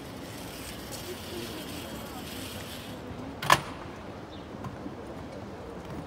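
Outdoor street ambience: a steady wash of background noise with faint distant voices, broken by one sharp knock about three and a half seconds in, the loudest sound.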